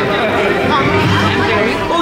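Many people talking at once in a large theatre: audience chatter before a show, a steady mix of overlapping voices with no pauses.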